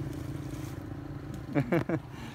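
Low, steady hum of a motor vehicle engine, fading over the first second or so, with a man laughing briefly near the end.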